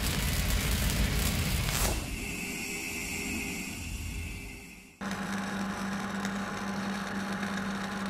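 Logo-intro sound effects: a rumble fading away, with a falling whoosh about two seconds in. About five seconds in it cuts to a Hobart wire-feed welder welding, a steady crackle over a low hum.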